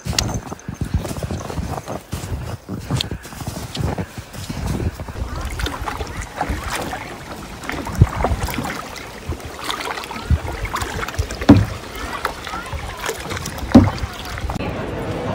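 Kayak paddling on a river: paddle strokes in the water with a few sharp thumps, loudest near the end, of the paddle knocking against the plastic kayak. Earlier, crunching footsteps and walking-pole strikes on a snowy trail.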